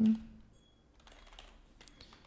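Faint clicking of computer keyboard keys as a word is typed.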